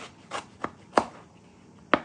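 Kitchen knife slicing through watermelon and knocking on the cutting board: about five short chops, the loudest about a second in and another near the end.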